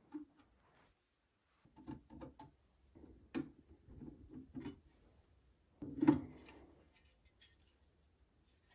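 A screwdriver working the screws of a solar inverter's terminal cover: a run of small clicks and scrapes, then a louder knock and rattle about six seconds in as the cover is lifted off the casing.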